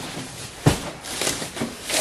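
A large cardboard box is set down with a single sharp thud, then its flaps and the plastic wrap inside rustle and crinkle as it is handled open. A smaller knock comes near the end.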